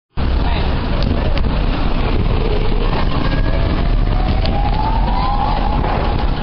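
Loud street noise at the roadside by a parked van: steady vehicle rumble with indistinct voices, and a single slow rising wail in the second half.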